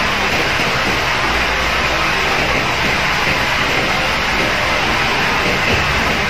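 Steady, even hiss of background room noise, unchanging throughout, like an electric fan running.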